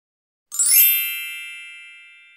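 A single bright chime sound effect with a sparkly shimmer on top, struck about half a second in and ringing down slowly.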